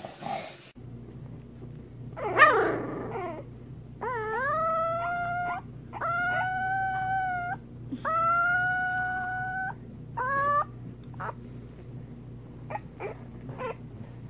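A newborn English bulldog puppy howling: a short squeal, then three long howls that each rise and then hold steady, and a short final one.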